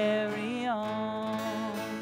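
A woman singing a long held note over acoustic guitar. The note steps down in pitch about half a second in, holds, and fades out near the end.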